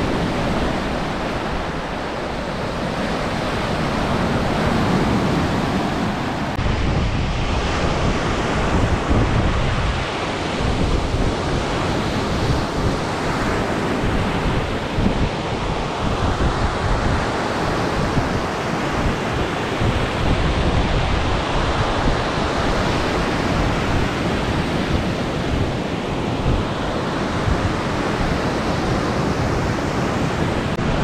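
Small lake waves breaking and washing up on a sandy beach, with wind gusting on the microphone.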